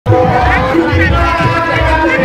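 Javanese gamelan accompaniment for a jathilan (kuda lumping) horse dance, with sustained ringing tones over low drum beats and crowd voices.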